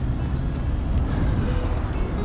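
Steady low outdoor rumble with background music playing.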